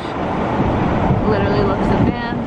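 Road and engine noise inside a moving car, a steady low rumble, with a faint voice in the second half.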